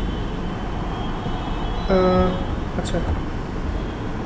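Steady low rumble and hiss of the recording's background noise, with a short voiced hesitation sound, like 'uhm', about two seconds in and a faint click about a second later.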